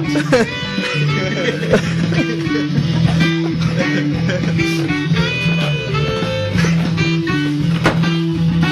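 Psychedelic rock music: guitar playing over a bass line that repeats a short pattern of notes, with voices in the room over it.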